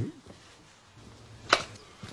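A single short, sharp knock about one and a half seconds in, over quiet room tone.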